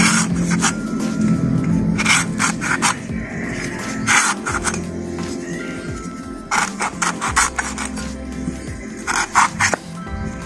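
A large knife blade scraping and shaving the fibrous outer husk off the top of a small coconut, in short bursts of quick strokes every couple of seconds, over background music.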